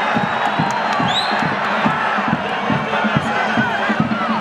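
Football crowd in the stands cheering and chanting, with a steady low beat of about three to four strokes a second running underneath.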